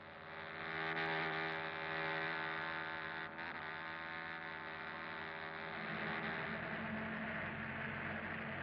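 A steady droning hum of a car driving, made of several sustained tones over a rushing noise. It swells up in the first second and deepens about six seconds in.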